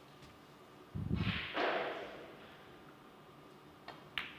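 Broadcast replay transition effect: a low thud about a second in, then a whoosh that fades away over about a second.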